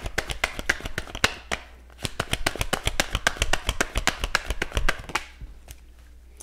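A tarot deck being shuffled by hand: a rapid run of crisp card clicks, with a short pause about a second and a half in, stopping about five seconds in.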